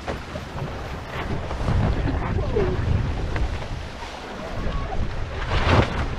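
Wind buffeting the microphone and water rushing past the hulls of a foiling Viper catamaran under sail. It ends in a loud splash near the end as the boat capsizes and the sail goes into the water.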